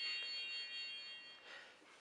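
Disney Frozen Cool Tunes sing-along boombox toy playing its short electronic power-off chime: several clear tones entering one after another and ringing together, fading away about a second and a half in.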